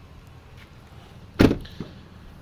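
One heavy thud of a pickup truck's door about one and a half seconds in, followed by a lighter knock.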